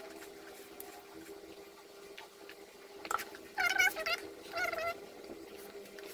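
Two short, high-pitched, wavering calls from a small pet animal a little over halfway through, one right after the other, over a faint steady hum.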